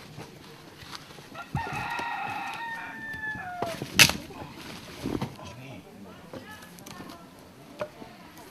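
A rooster crowing once, a long held call of about two seconds that drops in pitch at its end, starting about a second and a half in. Just after it, a single sharp knock.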